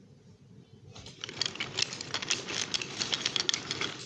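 Toy train cars rolling past on wooden track, their wheels clattering in a fast run of small clicks over the rails and joints. It starts about a second in and cuts off suddenly near the end.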